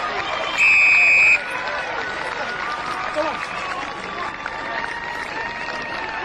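A single sharp referee's whistle blast, a little under a second long, about half a second in, over many spectators' voices shouting and cheering.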